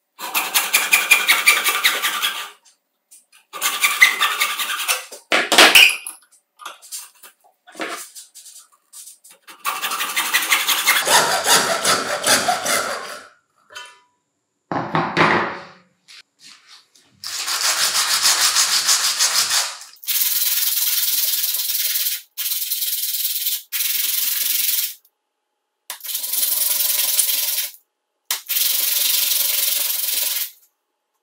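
Hacksaw cutting through a PVC pipe fitting in several runs of quick strokes with short pauses, with a few light knocks of handling in between. In the last stretch a cut PVC ring is rubbed on sandpaper by hand in steady bursts, smoothing its cut edge.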